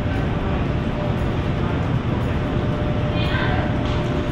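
Steady low rumble of room noise, like the bar's ventilation or air conditioning, with a faint steady tone through it.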